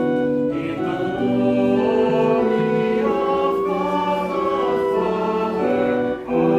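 A group of voices singing a liturgical hymn with instrumental accompaniment, in long held chords that move from note to note.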